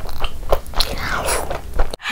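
Close-miked eating: biting into and chewing a mouthful of chicken and biryani rice, a dense run of wet clicks and crunchy crackles.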